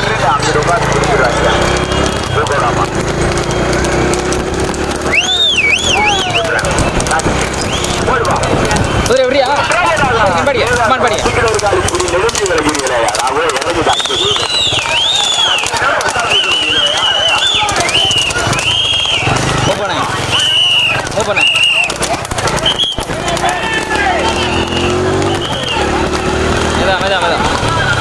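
Men shouting and cheering on a racing horse cart, several voices at once and unbroken, with high, swooping shouts for several seconds in the middle and a low rumble underneath.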